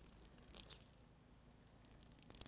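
Near silence, with a few faint soft ticks about half a second in.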